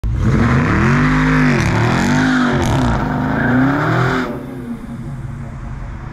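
Dodge Charger Scat Pack's 392 HEMI V8, brand new and still in its break-in period, revved hard as the car launches and spins its tyres, the engine pitch rising and falling several times over tyre noise. The engine noise drops away after about four seconds.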